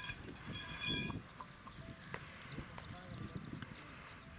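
Men's voices around the bulls, led by one short, high-pitched call about a second in, the loudest sound here. Faint scattered clicks and knocks follow.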